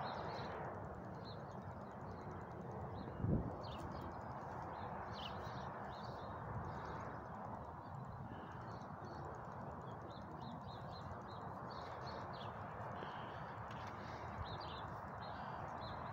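Quiet garden ambience: small birds chirping now and then over a steady low rush of outdoor background noise, with one brief low sound about three seconds in.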